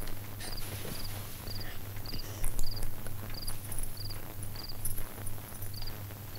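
Crickets chirping in a steady rhythm, a short trilled chirp roughly every two-thirds of a second, over a low steady hum, with a few soft knocks, the loudest about halfway through.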